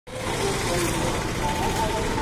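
Steady road-traffic noise on a bridge, with faint voices mixed into the background.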